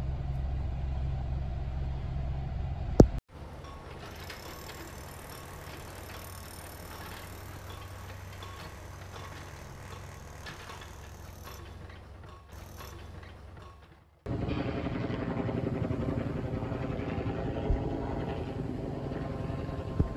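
Steady low rumble of a car cabin while driving, ending in a sharp click about three seconds in. It cuts to a quieter even shop ambience, and a little past the middle a steady, louder drone with a hum comes in.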